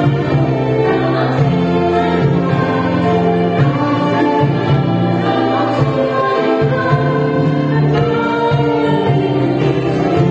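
Amplified singing by a man and a woman over live ensemble accompaniment with a steady bass line, a song in a slow, sustained style.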